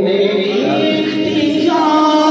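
A man singing a naat (devotional poem in praise of the Prophet) without instruments, drawing out a long held note from about half a second in and stepping up in pitch near the end.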